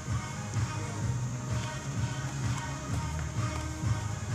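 Music playing, with a heavy, shifting bass line.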